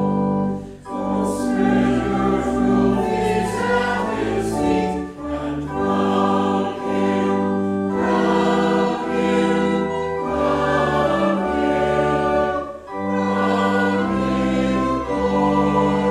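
Church organ playing slow, sustained chords over a deep bass, with voices singing. The music breaks briefly between phrases, once near the start and again about 13 seconds in.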